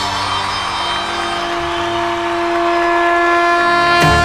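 Live stage music closing a song: the drumming stops and the band and singer hold one long final note and chord, steady and swelling slightly louder toward the end.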